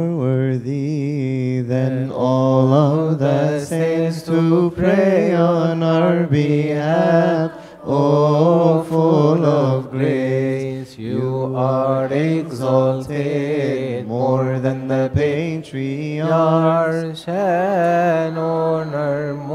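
Chanting of a Coptic Orthodox hymn: a drawn-out melody whose pitch wavers and turns, sung over a steady low held note.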